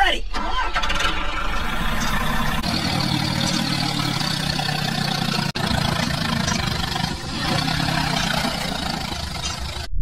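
Tractor engine starting and then running steadily, cutting off suddenly near the end.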